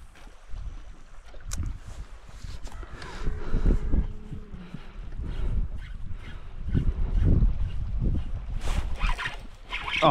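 Wind gusting over the microphone in low rumbling bursts, with choppy lake water around a small fishing boat.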